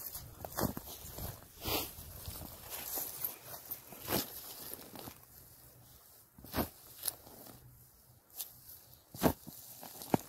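A long-handled metal digging tool cutting into turf and soil, making short crunches and scrapes at irregular intervals, with footsteps on grass.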